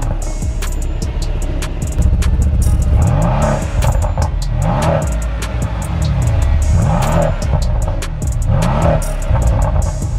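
Mercedes-AMG C63 S coupe's twin-turbo V8 revved through the exhaust in several short blips, each rising and falling in pitch. Background music with a beat plays over it.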